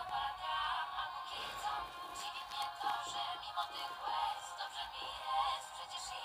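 A Polish pop song with a woman singing plays back throughout. It sounds thin and tinny because its low end is cut away.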